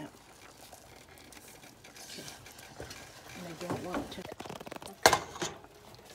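Wooden spoon stirring and working thick cornmeal cou-cou in a stainless steel pot, a quiet stirring and scraping. A single sharp knock comes about five seconds in.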